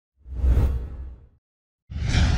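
A whoosh sound effect for an animated logo: a swell of rushing noise with a deep low rumble that rises quickly and fades away over about a second. Another sound starts right at the end.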